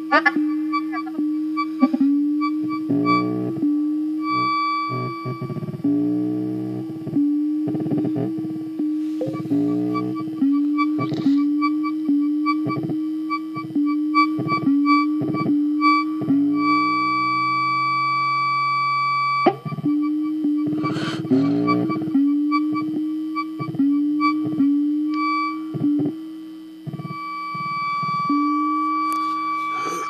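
Ciat-Lonbarde Plumbutter analog synthesizer playing a self-clocking rhythmic feedback patch: repeating pulsed notes with quick pitch sweeps, about two a second, over a steady high tone. A little past the middle the pulsing gives way to a held tone for about three seconds, then resumes.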